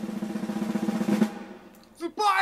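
A drum roll sound effect: a fast snare roll that fades out about a second and a half in.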